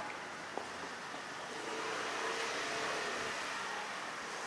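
Steady outdoor city ambience: an even background hiss of distant traffic, swelling slightly partway through, with a single faint click about half a second in.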